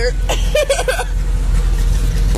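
A Jeep CJ-5's 350 Chevy V8 running with a steady low drone as the Jeep drives through deep creek water. Laughter is heard in the first second.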